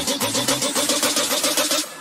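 An engine-like sound effect that pulses fast and evenly, about ten pulses a second, at a steady pitch without revving, under the channel logo reveal. It stops just before the outro music comes in.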